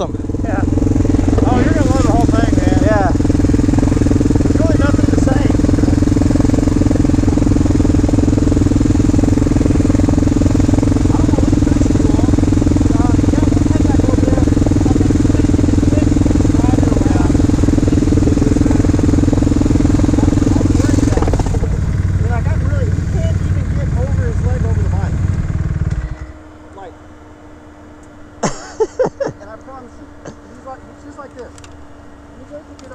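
Off-road quad and dirt bike engines idling close by. Part of the sound drops out about 21 seconds in, and the loudest engine cuts off about 26 seconds in, leaving a fainter steady idle. Brief voices come near the end.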